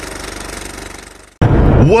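The tail of an intro sound effect fading away over about a second and a half, then a sudden cut to the steady low rumble of a car cabin on the road. A man's voice comes in just at the end.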